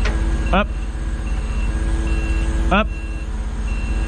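A Cat forklift's warning alarm beeps steadily, a short high beep about once a second, over the forklift's engine running as it lifts a load.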